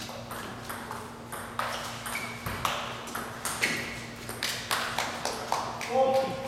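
Table tennis rally: a table tennis ball clicking against the paddles and bouncing on the table, about two to three sharp clicks a second.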